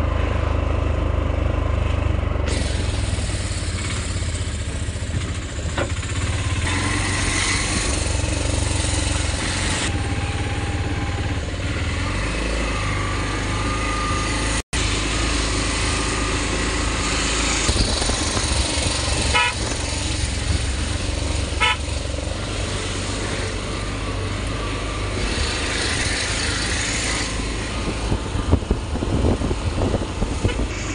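Engine and road noise of a moving vehicle heard from inside it, a steady low rumble throughout, with two short horn toots about twenty seconds in. The sound drops out for an instant about halfway.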